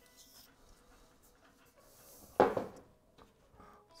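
Faint handling of a small screw-on gas canister as it is fitted to a camping stove, with one short louder sound about two and a half seconds in.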